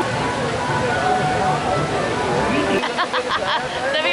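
Rushing, splashing water of a raft rapids ride under crowd chatter; about three seconds in the water noise drops away and nearer voices take over.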